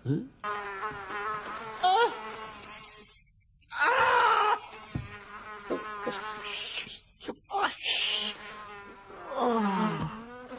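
A buzzing that wavers up and down in pitch, mixed with wordless moans and grunts, with a couple of louder sudden bursts about two and four seconds in.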